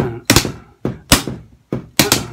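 Drumsticks striking a homemade practice kit of cardboard boxes, about five strokes in uneven long-short spacing: a swung shuffle rhythm.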